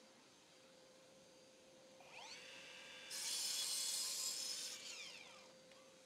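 Evolution sliding mitre saw, heard faintly: the motor whines up about two seconds in, cuts through a wooden frame piece with a hissing rasp for under two seconds, then winds down with a falling whine. The cuts are 45-degree mitres.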